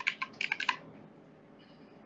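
Computer keyboard typing: a quick, irregular run of keystrokes in the first second, then quiet.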